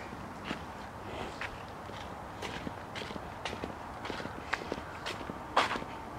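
Footsteps walking outdoors: light, uneven steps and scuffs roughly every half-second to second, with one louder step near the end.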